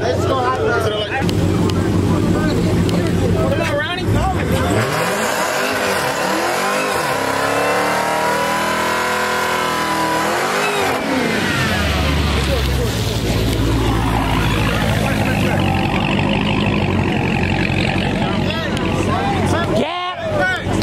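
A Dodge V8 muscle car revving hard in a burnout, tyres spinning and smoking. The revs climb and fall several times over a few seconds, then hold steady with a deep rumble.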